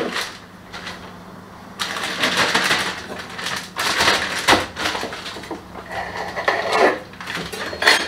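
Plastic packaging of grated cheese crinkling and rustling as it is handled, in several bursts, with a few small sharp clicks and knocks among them.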